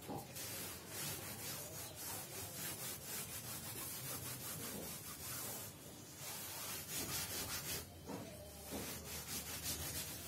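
Blackboard duster wiping chalk off a chalkboard: a steady run of rubbing, back-and-forth strokes, with a couple of brief pauses in the second half.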